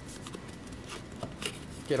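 Cardboard product box being handled: faint rustling and scraping of the paperboard flaps and sleeve, with a few small taps.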